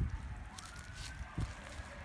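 Faint outdoor background with a low rumble and a thin tone that rises briefly, then slowly falls in pitch, plus a light click about one and a half seconds in.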